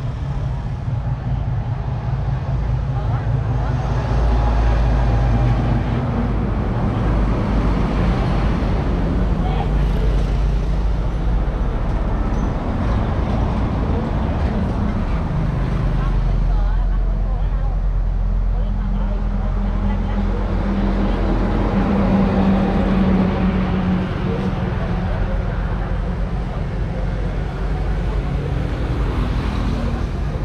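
A motor vehicle engine running close by, its low hum shifting in pitch a few times, over general road-traffic noise.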